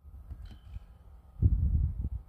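Wind buffeting a phone microphone outdoors: an uneven low rumble that grows louder about one and a half seconds in.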